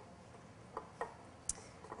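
Four faint, short clicks and knocks, spread over the second half, as pickling cucumbers are pushed down into a glass canning jar, cucumber knocking against glass.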